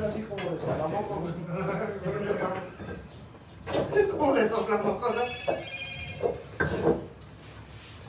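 People talking over a stone pestle crushing and grinding nuts with salt in a volcanic-stone molcajete. A brief high ringing tone, like a phone, sounds a little past the middle.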